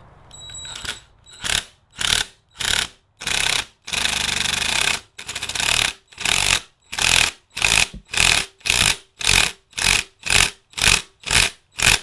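Cordless impact driver run in repeated trigger bursts on the bolts of a 1985 Honda ATC 125M's centrifugal clutch. One long burst comes about four seconds in, then quick short pulses about two a second.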